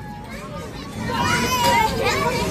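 Children's high voices and chatter in a crowd, with one child's voice calling out from about a second in over the general babble.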